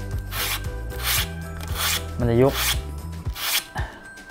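Sandpaper rubbing on the foam wing's root edge in about five even back-and-forth strokes, bevelling the joint so the two wing halves sit flush when the tips are raised for dihedral.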